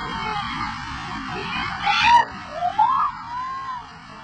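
Steady rushing of a fast white-water river, with people in a crowd calling out and screaming in short rising and falling cries, loudest about two to three seconds in.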